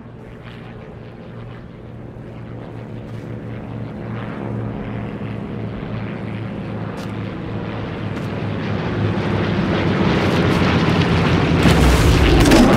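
Single-engine propeller biplane flying in low, its engine droning steadily and growing louder throughout as it closes in, loudest at the end as it swoops overhead.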